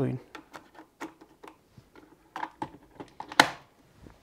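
Small plastic clicks and rattles as an espresso T-disc is set into the pod holder of a Bosch Tassimo Style coffee machine, then one loud sharp clack about three and a half seconds in as the machine's lid is shut down over the pod.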